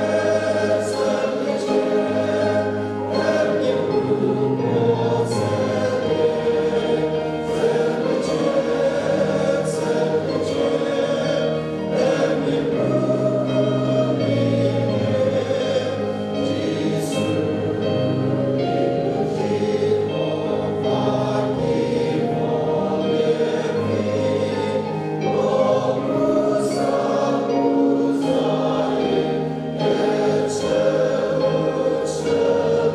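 A congregation singing a hymn together in many voices, moving in held notes that change every second or two without a break.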